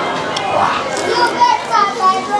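Background chatter of people's voices in a busy restaurant dining room, some of the voices high-pitched, with no clear words.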